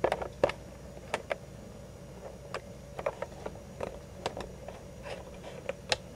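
Scattered light clicks and taps, irregular, about two a second, over a faint steady electrical hum.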